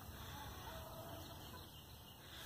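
Quiet background with a faint, brief bird call about half a second in.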